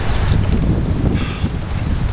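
Wind buffeting the microphone: a steady low rumbling noise with gusts.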